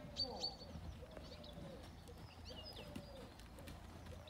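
Birds calling: low cooing notes repeated about once a second, with thin high chirps from smaller birds over them.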